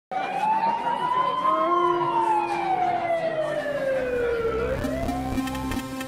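A single siren-like wailing tone that rises for about a second and a half, falls slowly, and turns upward again near the end.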